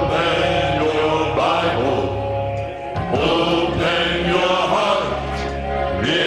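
Male vocal group singing a gospel song in several-part harmony, with a short breath between phrases about three seconds in.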